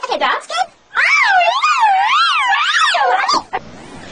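A human voice processed by a voice-changer app effect, pitched high and warbling, its pitch swinging up and down about twice a second. There is a short burst first, then a long drawn-out vocal "yeah" that ends shortly before the close.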